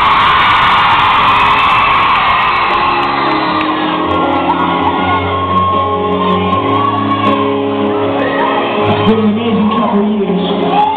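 A piano played live on stage while a crowd of fans screams and cheers in a large hall. The screaming is loudest at the start and eases, leaving steady sustained piano chords.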